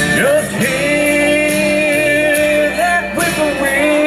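Slow country song played live, acoustic guitar with band backing, carrying one long held melody note that bends slightly and ends about three seconds in.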